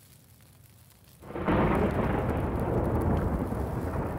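A sudden, steady rumbling noise effect, like thunder, comes in about a second in after a near-silent pause.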